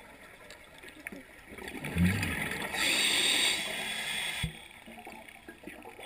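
Scuba regulator breathing heard underwater: a low bubbling rumble about two seconds in, then a hiss lasting over a second that cuts off suddenly.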